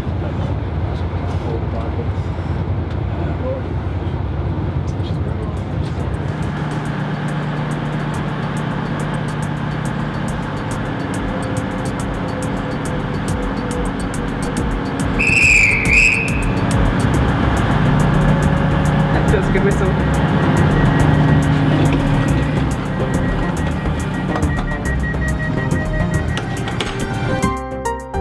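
Class 221 Voyager diesel train: a low running rumble, then the steady note of its diesel engines, which grows louder for a few seconds after the midpoint. About halfway through comes a short, shrill, trilling whistle, and music comes in at the very end.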